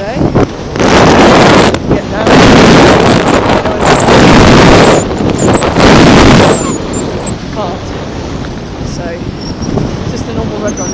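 Wind buffeting the microphone of a camera carried by a skier moving fast downhill. It comes in loud surges about a second in, from about two to five seconds and again around six seconds, then settles into a lower, steady rush.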